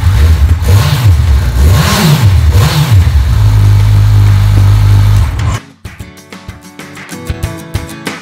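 Kawasaki 1000 SX's inline-four engine, breathing through an Akrapovic silencer, revved in three quick blips and then held at raised revs for about two seconds. It cuts off suddenly about five and a half seconds in, and guitar music takes over.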